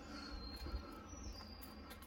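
A faint, thin, high-pitched animal call. One tone drifts from early on, and a second, slightly higher one comes in about a second in and falls a little before stopping near the end. A low background rumble runs under it.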